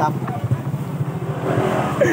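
A motor vehicle going by on the road: a steady low engine hum with road noise building louder near the end.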